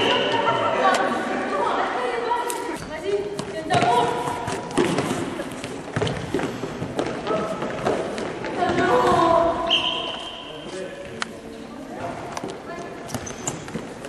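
Futsal ball being kicked and bouncing on a wooden sports-hall floor in scattered sharp thuds, under players' and spectators' shouts echoing in the large hall.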